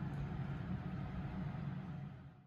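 Steady low hum of room background noise, tapering off at the very end.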